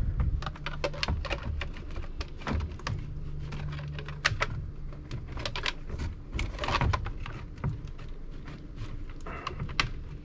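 Plastic clicks and knocks as a plastic filter-housing wrench grips and tightens blue plastic water-filter housings, many irregular sharp clicks throughout. A low steady hum runs underneath.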